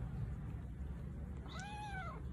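A kitten meows once near the end, a short call that rises and then falls in pitch, over a steady low rumble.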